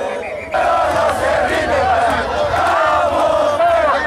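Large crowd of protesters shouting, many voices overlapping; the shouting swells after a brief dip in the first half second.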